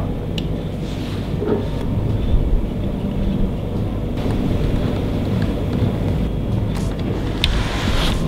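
A steady low rumble with a few faint, short clicks.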